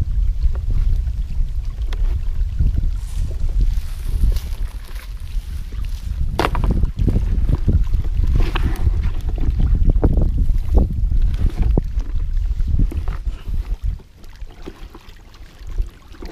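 Wind buffeting the microphone with a steady low rumble, over irregular wet squelches and crackles of a hand kneading moist, sticky fish groundbait in a plastic bucket, busiest in the middle and quieter near the end.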